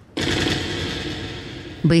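Rapid machine-gun fire, a stage sound effect, starting suddenly and fading out over about a second and a half.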